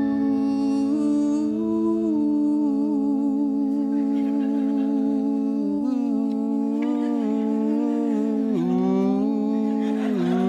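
Several male voices humming a long held harmony together, wavering in vibrato. Partway through they shift pitch together in small glides and dip down once near the end.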